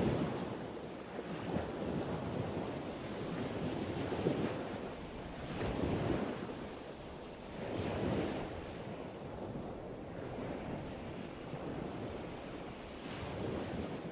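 Ocean surf with wind on the microphone, a steady rush that swells and eases every couple of seconds.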